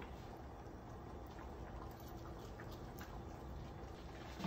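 Quiet room with faint, scattered mouth clicks of someone chewing a bite of soft food.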